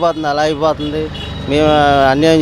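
A man talking in Telugu, with steady street traffic noise in the background.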